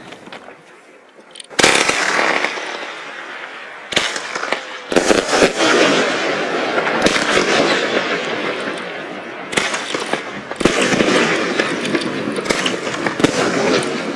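Funke Goldstrobe 20 mm firework battery firing: about a second and a half in, a sharp launch bang, then a string of shots, each followed by dense crackling as the gold strobe stars burst overhead.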